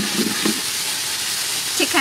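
Chopped garlic and sauce sizzling in hot oil in a pan, a steady hiss. A chicken calls near the end.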